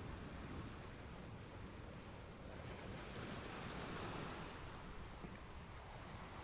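Faint sea surf washing on a pebble beach, a steady hiss that swells a little past the middle.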